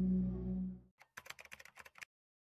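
A steady low electronic drone that fades out just before a second in, then a quick run of computer-keyboard typing clicks, a sound effect for a title being typed out on screen.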